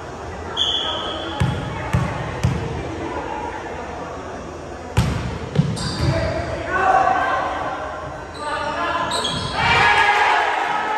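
A short whistle blast, then a volleyball bounced three times on a hardwood gym floor before it is served with a sharp hit about halfway through; two more quick hits of the ball follow, then players' shouts ring out in the large gym.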